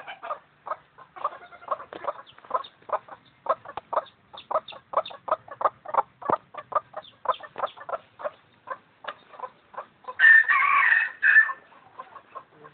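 Chicken clucking in a long rapid run of short clucks, about three a second, then a louder drawn-out call of a second and a half about ten seconds in.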